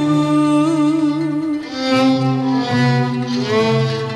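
Instrumental passage of a Turkish art song in makam Rast, with bowed strings holding long melodic notes over a sustained lower line.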